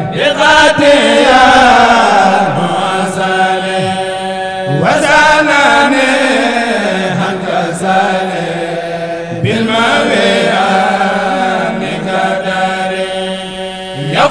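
Male voices chanting a khassida, an Arabic devotional poem, in long drawn-out melodic phrases, with a new phrase starting about every four to five seconds.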